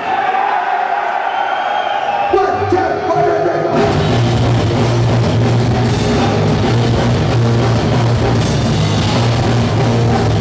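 Hardcore band starting a song live: a held, slowly falling note first, then a single sustained note about two and a half seconds in. The full band comes in loud with drums, bass and guitars about four seconds in.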